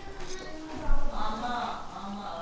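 People talking in the background while someone chews, with one sudden thump a little under a second in.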